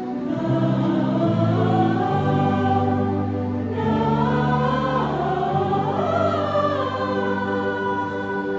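Mixed choir of men's and women's voices singing in harmony. They hold long notes that move to new chords every second or two.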